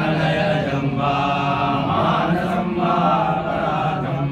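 Male priests chanting Sanskrit hymns to Shiva in unison in a steady, continuous chant.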